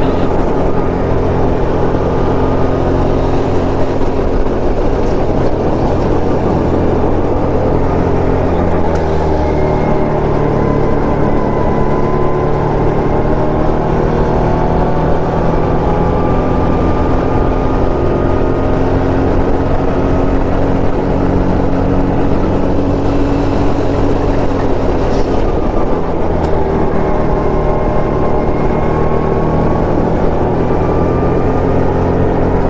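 Go-kart engine running hard on track, close up from the kart, a steady engine note whose pitch drops and climbs back about eight seconds in and again near the end as the driver lifts and gets back on the throttle.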